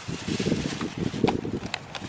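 Wind buffeting the microphone, a rumbling gust, with a few light crinkles from a plastic bag being handled.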